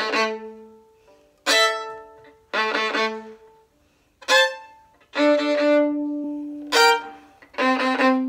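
Violin playing a double-stop passage in about seven short, separately bowed notes and phrases, each struck with a hard, biting attack at the frog of the bow, with brief gaps between and one longer held note just past the middle.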